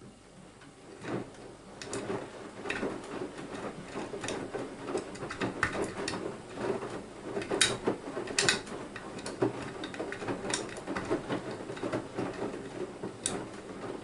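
Beko WMY 71483 LMB2 front-loading washing machine's drum starting to tumble about half a second in, with wet laundry sloshing and dropping in foamy wash water. A few sharp clicks stand out, two of them close together near the middle and one near the end.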